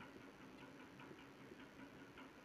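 Near silence with faint, quick ticks of a marker pen writing on a whiteboard.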